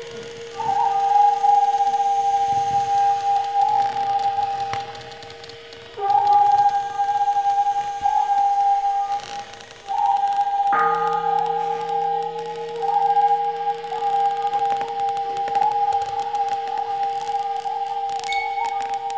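Instrumental music: a transverse flute plays long, steady held notes over a constant low drone, with short breaks about five and ten seconds in and a few sharp percussion clicks.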